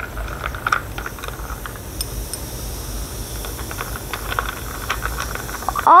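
Fizzing hiss with many small crackles as Tums antacid tablets react with vinegar in a glass, stirred with a plastic spoon, giving off carbon dioxide bubbles.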